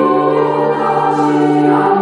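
Children's choir singing in several parts, holding long notes that change pitch about halfway through.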